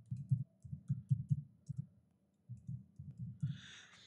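Typing on a computer keyboard: two quick runs of keystrokes with a short pause between them.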